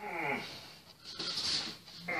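A dog whining once, a short whine falling in pitch at the start, followed about a second later by a softer breathy sound.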